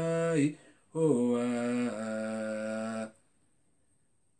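A man's voice chanting in long, held notes with no accompaniment: a phrase ends about half a second in, and a second one from about a second in stops sharply near the three-second mark.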